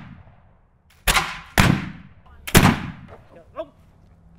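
Three flintlock musket shots: the first about a second in, the next half a second later, the last about a second after that. Each ends in a trailing echo.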